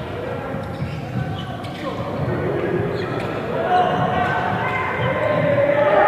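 Basketball game in a gym hall: a few sharp bounces of the ball on the court, under spectators' and players' voices that grow louder about four seconds in.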